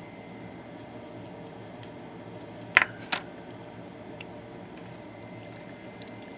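Two sharp clicks about a third of a second apart, near the middle, from a battery being fitted one-handed into a battery holder, over a steady low background hiss.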